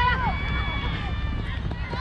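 A player's long, high-pitched shout on the field that trails off just after the start, followed by fainter drawn-out calls, over a steady low rumble of wind and movement on the helmet-mounted camera's microphone.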